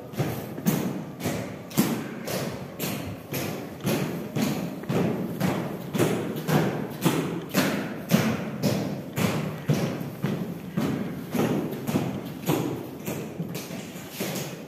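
Honour guards' leather parade boots striking granite steps in a slow, even ceremonial march, about two footfalls a second, each echoing briefly in the stone passage.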